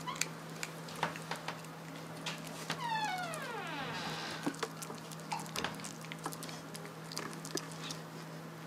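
Pomeranian puppy gnawing a chew, giving irregular sharp clicks of teeth on the chew. About three seconds in there is one descending whine about a second and a half long, over a steady low hum.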